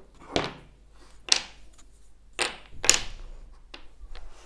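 Wooden toy blocks knocking against each other and the table while being searched through and handled, about five sharp knocks with short clattering tails.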